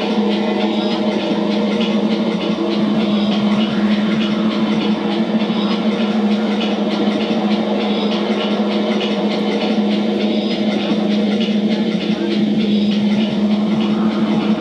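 Live electronic band music: keyboards and synthesizers holding a steady droning chord built on a strong low note, with no drums.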